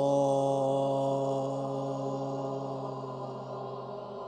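A long chanted 'Om' held on one steady pitch, slowly fading.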